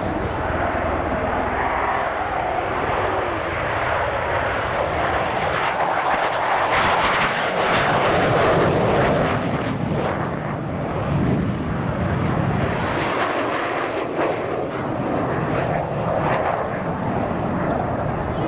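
Military jet aircraft flying past at low altitude: a continuous jet engine noise that swells to its loudest and harshest partway through, as a MiG-29UB passes with both afterburners lit.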